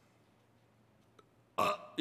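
Near silence for about a second and a half, then a short, rough vocal sound from the speaking man, heard just before he starts talking again.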